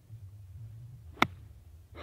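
A golf iron striking the ball off fairway grass on a pitch shot: one sharp click a little over a second in, over a faint low rumble.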